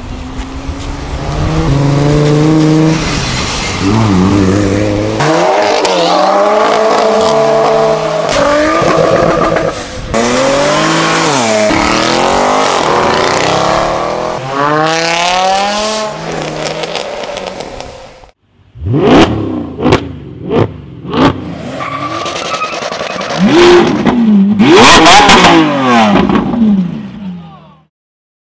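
Modified performance car engines accelerating hard one after another, revving up and dropping back through gear changes. About 18 seconds in the sound cuts away, then comes a quick series of sharp exhaust bangs and more loud revving.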